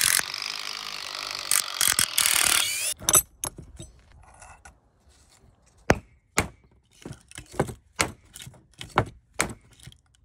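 A power drill boring into a wooden two-by-four, running continuously for about three seconds. It is followed by a run of sharp, separate hammer blows, about a dozen, unevenly spaced, as a nail is driven through a climbing rope into the wood.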